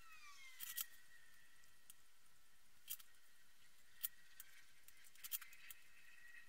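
Near silence with a handful of faint, sharp clicks from hand-soldering pin-header joints on a circuit board, over a faint thin high whine that dips in pitch at the start.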